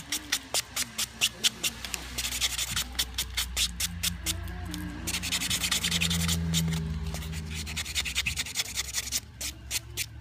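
Light nail buffer block rubbed quickly back and forth over a fingernail, a steady train of scratchy strokes about five a second, smoothing the dipping-powder nail surface.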